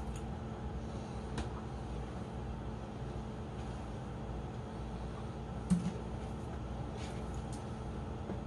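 Small aquarium air pump humming steadily as it drives the fishbowl filter, with a few faint clicks and a short soft knock about six seconds in.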